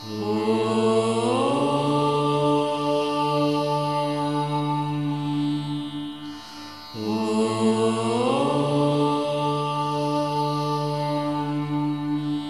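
Devotional background music of long held chanted notes: two long phrases, each sliding up in pitch about a second after it starts, the second beginning about seven seconds in.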